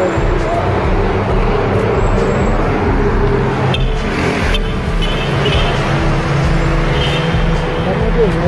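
Steady city road traffic from cars and vans driving on the road and into the tunnel below.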